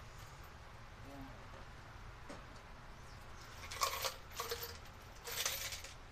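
Loose small metal hardware, nuts, bolts and washers, rattling and clinking in a pan as a hand rummages through it. It comes in a few short bursts in the second half, the loudest about four seconds in and near the end.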